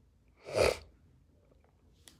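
One short, noisy burst of breath from a man, about half a second in.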